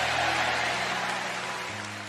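Soft background music under the sermon: sustained low chords, with a chord change near the end, slowly getting quieter.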